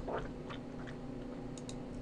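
Quiet room tone with a steady low hum and a few faint clicks about one and a half seconds in.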